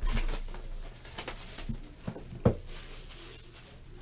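A stack of football trading cards being handled and flipped through by hand: a brief burst of rustling at the start, then soft scattered clicks and one sharper knock about two and a half seconds in.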